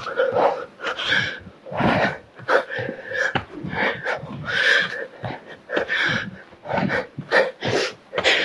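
A woman breathing hard and fast while doing burpees, with quick loud breaths one or two a second, each cut short.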